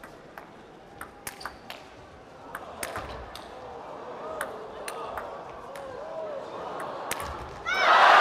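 Table tennis rally: the 40 mm celluloid ball clicking sharply off rubber paddles and the table in quick, irregular strokes, while crowd voices build. Near the end a loud crowd cheer and applause break out as the point is won.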